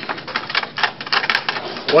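Small items being handled and moved about on a cluttered desk: a quick, irregular run of clicks and light plastic rattles.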